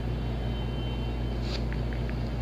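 Steady low background hum, with a few faint ticks in the second half.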